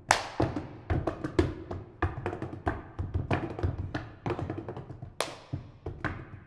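Three percussionists playing a wooden tabletop with their bare hands: an irregular, interlocking run of sharp slaps and taps over soft low thuds. There is a loud slap at the start and another about five seconds in.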